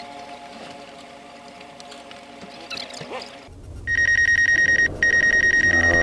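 Faint steady hum, then about two seconds in from the end a loud, rapidly pulsed warning beep from the DJI drone's app and controller, in three runs with short breaks. It is the alert for the drone's obstacle avoidance braking on its own, which the pilot blames on sunlight hitting the sensors.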